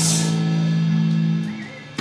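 The last chord of a live rock song on electric guitars and bass, left ringing after the band stops and dying away about one and a half seconds in.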